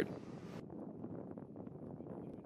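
Faint outdoor ambience: a low, steady wind rumble on the microphone.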